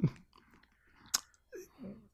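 A pause in close-miked talk: one sharp mouth click about a second in, then faint short mouth and breath sounds near the end.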